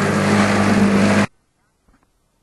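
A small boat's motor running steadily, mixed with wind and water noise, which cuts off abruptly just over a second in, leaving near silence.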